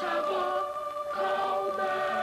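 Commercial jingle: a choir singing one long held chord.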